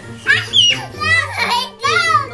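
Toddlers' high-pitched squeals and wordless excited voices during rough-and-tumble play, over music playing underneath.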